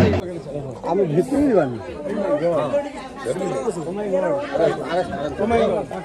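Drum music cuts off abruptly at the very start, then several people talk over one another in overlapping chatter.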